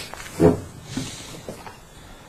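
A person's short, low, breathy vocal sound about half a second in, trailing into a hiss, with a few fainter breaths after it.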